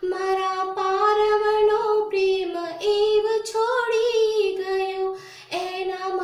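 A woman singing a slow devotional song in long held notes, with a short breath break about five and a half seconds in.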